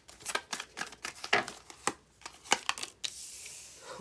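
A deck of tarot cards being shuffled by hand: a quick run of soft card flicks and snaps, then about a second of steady hiss near the end.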